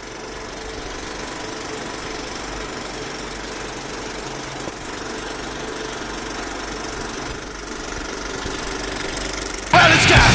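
A steady mechanical running noise with a faint hum fills a break in the music. Loud punk rock music cuts back in near the end.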